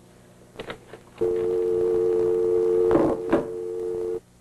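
Desk telephone handset clicking as it is lifted off the cradle, then a steady dial tone coming on just over a second in, with two clicks near the three-second mark.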